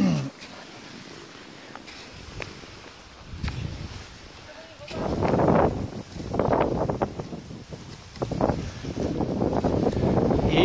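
Cross-country skis hissing over snow, with wind buffeting the microphone as the skier glides downhill: quiet at first, then uneven rushing bursts about once a second from about halfway through.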